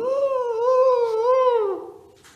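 A man imitating an ambulance siren with his voice: one long call that glides up, wavers twice, and falls away near the end.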